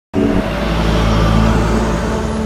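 An engine running steadily: a loud low drone with several steady tones over it, starting suddenly at the very beginning.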